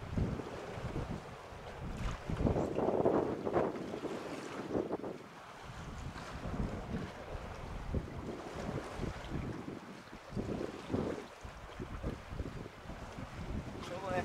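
Gusty wind buffeting the microphone in uneven low rumbles, strongest about three seconds in.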